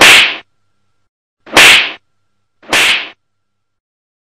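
Three short, sharp hissing bursts, each under half a second, with silence between: the second comes about a second and a half after the first and the third about a second later.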